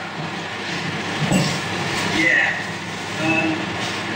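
Several electric cooling fans running, a steady rushing noise with faint, indistinct speech under it.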